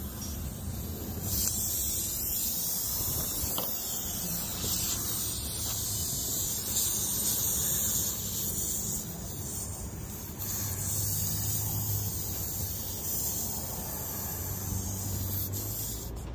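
Air hissing steadily out of a puncture in a car tire's tread: the tire is leaking through the hole. The hiss grows stronger about a second in and drops briefly near the middle.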